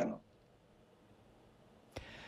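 Near silence: a pause between speakers, with the tail of a man's speech at the very start and one brief click just before the end.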